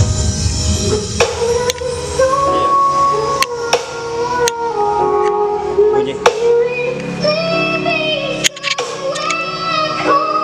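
Song with a sung melody played loud through a woofer in a wooden speaker box, driven by a home-built amplifier kit whose output stage mixes Sanken and Toshiba transistors, as a sound check. Several sharp clicks come through over it.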